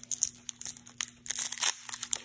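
Foil wrapper of a Pokémon TCG Battle Styles booster pack crinkling and tearing as it is torn open by hand, an irregular run of small crackles.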